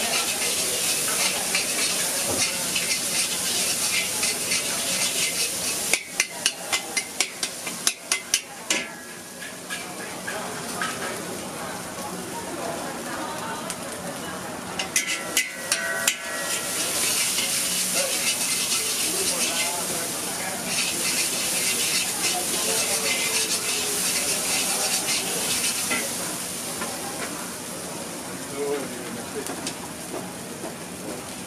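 Mee goreng noodles sizzling in a hot wok as they are stirred and tossed with a metal ladle. A quick run of sharp ladle clanks against the wok comes about six seconds in, and a few more come about halfway through.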